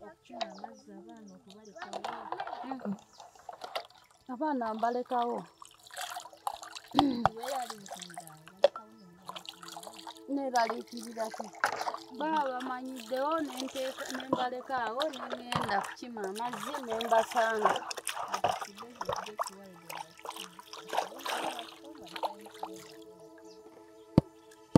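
Dishes being washed by hand in basins of water: water splashing and dripping, with short knocks and clatter of plastic cups, plates and metal pans, under a woman talking.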